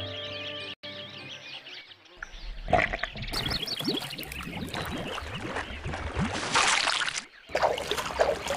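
Water sloshing and gurgling with bubbles as leafy green vegetables are swished and rinsed by hand in a basin of water, with a splash near the end. Soft music is heard in the first second.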